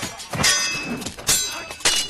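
Metal blades clashing in close combat, with four sharp metallic clangs in quick, uneven succession, each ringing briefly.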